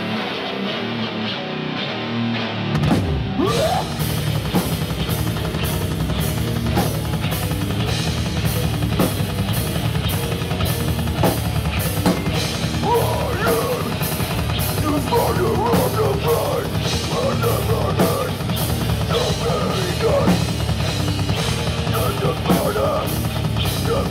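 Live rock band playing loud, with the drum kit prominent. After a thinner opening, the full band with drums comes in about three seconds in and keeps a steady driving beat.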